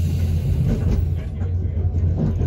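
Running noise in the cab of a class 425.95 Tatra electric multiple unit moving along the track: a steady low hum with light clicks from the wheels on the rails in the second half.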